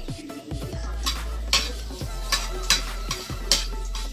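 Metal spatula scraping and knocking against a frying pan as food is stirred and sautéed, with light sizzling; the strokes start about a second in and come every half second or so.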